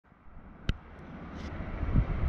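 A single sharp click, then a low outdoor rumble that grows steadily louder.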